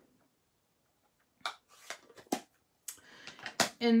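A few short clicks and rustles of card-making supplies being handled, starting about a second and a half in after a silent moment.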